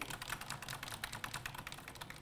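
Fast typing on a computer keyboard: a continuous, rapid run of key clicks.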